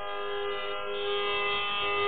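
Steady tanpura drone sounding the tonic of a Carnatic concert, a rich unchanging chord of overtones that swells gradually, just before the vocal begins.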